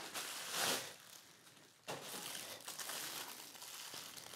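Plastic packaging crinkling as a camera body in its plastic bag is pulled out of its bubble wrap, with a short burst about half a second in and then faint, quieter rustling.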